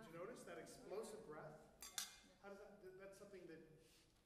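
Faint man's speech, with two sharp clicks close together about two seconds in.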